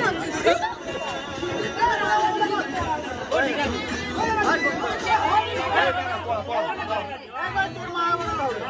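Several people talking over one another in lively chatter, with faint music underneath.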